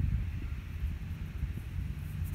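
Low, fluttering rumble of wind buffeting the microphone, with no clear distinct event.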